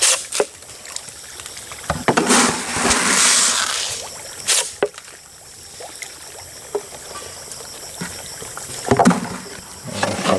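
Water splashing at the surface of a tilapia pond as the fish rise for feed, with a hissing spray of splashes about two seconds in that lasts nearly two seconds. A few sharp clicks come near the start, in the middle and near the end.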